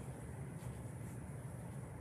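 Steady low background hum with faint even noise and no distinct event: room tone.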